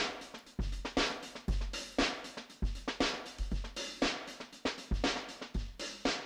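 Addictive Drums virtual drum kit playing a steady beat of kick, snare and hi-hats, run through a heavy EQ-based multiband compressor whose attack and release are being turned slower.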